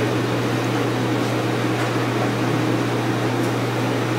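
Steady low hum over an even hiss: room tone with no voices.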